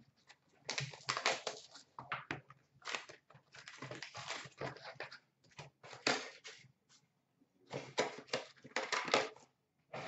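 Hockey card pack wrappers being torn open and crinkled by hand, with cards handled and shuffled: irregular bursts of crinkling and rustling with short pauses between them.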